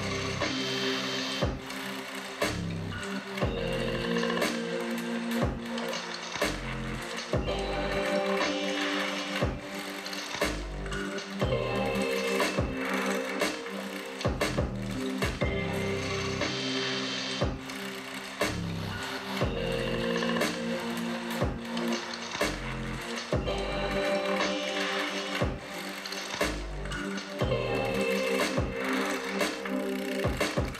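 Electronic music with a steady beat, deep bass and sustained synth tones, played through homemade two-way open-baffle speakers: a Coral Flat 8 full-range driver over a Coral 12L-25B woofer in each.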